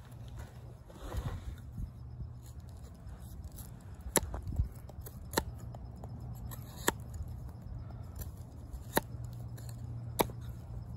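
Schrade Old Timer 169OT fixed-blade knife carving a wooden stick: four sharp clicks as the blade bites into the wood, a second or two apart, from about four seconds in, over a low steady hum.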